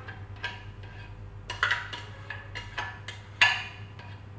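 A silicone spatula knocking and scraping against a glass bowl as a thick mixture is scraped out, about five light knocks with the loudest near the end, over a faint steady hum.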